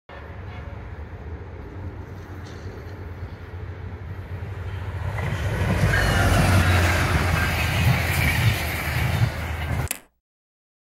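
A FrontRunner commuter train, led by an MPI MPXpress diesel locomotive, passing close by. The locomotive's low engine drone and the rolling noise of the train build up to their loudest about six seconds in as it goes past, then carry on with the bi-level cars until the sound cuts off suddenly at the end.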